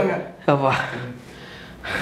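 A man's short wordless vocal sound about half a second in, falling in pitch and fading within half a second, followed by a quieter stretch and the start of another voice sound near the end.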